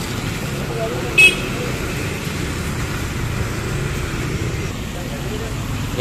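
Street traffic on a wet road: motorcycles and cars passing with a steady wash of engine and tyre noise. A short, high horn toot sounds about a second in.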